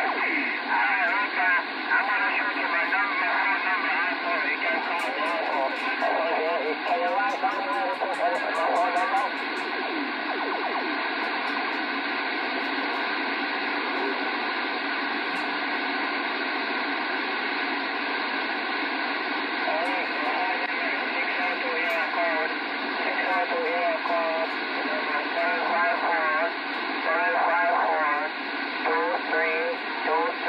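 Voices received over a two-way radio through its speaker, thin and narrow in tone and buried in steady static hiss so they are hard to make out. About ten seconds in the voices drop away and only the static remains for some ten seconds, then voices come back.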